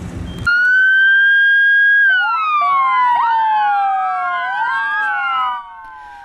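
Emergency sirens from a convoy led by a police car with an ambulance behind it: after a moment of engine noise, one steady high siren tone starts about half a second in, then several sirens overlap in wails falling and rising in pitch, dropping away shortly before the end.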